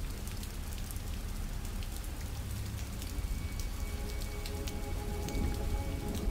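Rain falling in a steady patter with scattered drop ticks over a low rumble. Faint held musical tones come in about halfway through.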